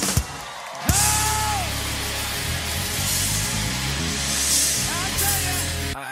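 Loud live worship-band music in rock style, with drums and electric guitar, and a voice shouting a held note about a second in.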